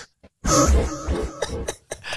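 A person's throaty non-speech vocal sound, like a throat clearing, starting about half a second in and trailing off after more than a second.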